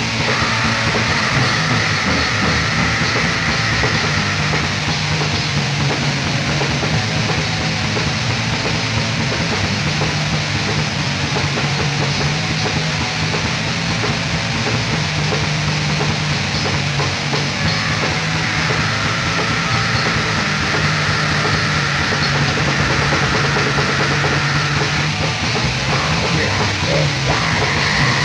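Raw, lo-fi black metal from a four-track master: a dense, unbroken wall of heavily distorted guitar, bass and drums, with sustained chords droning underneath.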